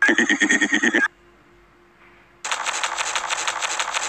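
A cartoon pig's laugh chopped into a fast stuttering loop: a loud burst of about a second, a short pause, then a longer rapid stutter from about halfway through.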